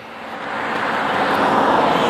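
An SUV on a highway approaching and passing close by: steady tyre and road rush that swells over about two seconds and is loudest near the end.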